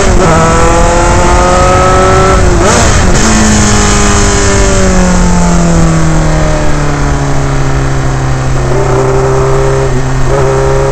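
Onboard sound of an F3 Dallara's Alfa Romeo four-cylinder racing engine at high revs, heard over wind rush. There is a gear change at the very start, another brief break with a jump in revs about two and a half seconds in, then the revs fall slowly through a bend before picking up again near the end.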